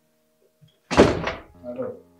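A single loud door bang about a second in, fading out over about half a second, then a voice begins near the end.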